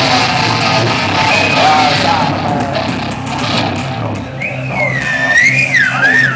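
Live rock band playing loud, electric guitar to the fore over a steady low note. About four seconds in, a high squealing tone starts and wavers up and down in pitch.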